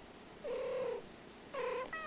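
Domestic cats exchanging short meows: two brief calls about a second apart.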